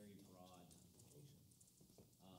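Near silence in a lecture hall, with a faint, distant voice speaking briefly off-microphone.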